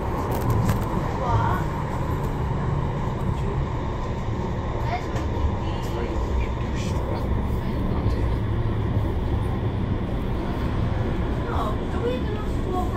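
Manchester Metrolink Bombardier M5000 tram running steadily along the line, its wheels and traction motors making a continuous low rumble heard from inside the driver's cab, with faint indistinct voices.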